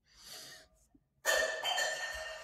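A man's breath close to the microphone, then a little over a second in a sudden, louder throaty vocal noise, rasping with a steady buzz in it, that trails off slowly.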